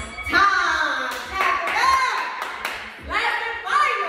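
Clapping in a quick steady rhythm, about three claps a second through the middle, with a voice singing or calling over it.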